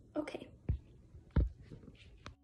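A brief whispered murmur from a young woman, followed by two soft knocks about a second in and near the middle, the second one louder, in a quiet small room.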